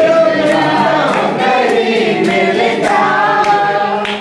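A group of people singing together, many voices at once, the sung notes held and gliding.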